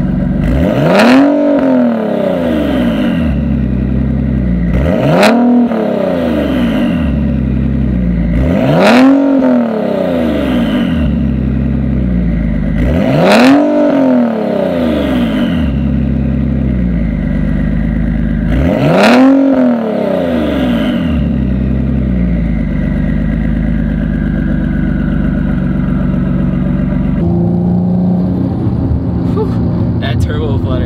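Single-turbo Nissan 370Z Nismo's VQ37 V6 idling and being blipped five times. Each rev climbs sharply and drops straight back to idle, and a falling whistle follows each one.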